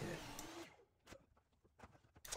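A man's voice ends a word, then near silence with a few faint clicks.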